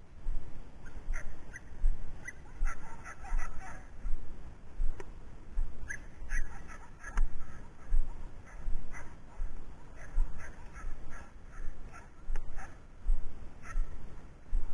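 Footsteps and body-camera movement of someone walking through tall dry grass, a soft low thump roughly every 0.7 s, with short high chirps scattered between them.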